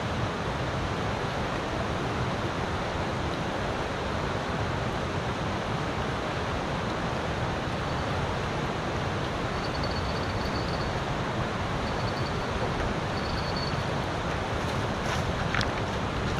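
Steady rushing of a fast-flowing river over a rocky bed, with wind buffeting the microphone.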